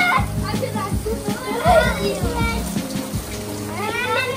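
Children's voices calling and squealing in short bursts, over steady background music.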